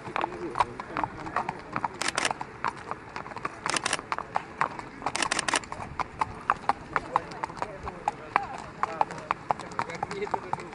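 Hooves of thoroughbred racehorses walking on a paved path, a steady clip-clop of steps, with voices murmuring in the background. A few quick bursts of sharp clicks stand out about two, four and five seconds in.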